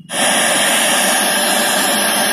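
Loud, steady hiss of untuned FM radio static from a DIY speaker's MP3/FM player module, played through its small speakers. It starts suddenly just after the beginning.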